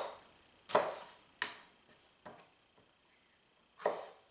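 Chef's knife cutting tomato strips into pieces on a wooden cutting board: separate knocks of the blade striking the board, about four, spaced unevenly with a longer pause before the last near the end.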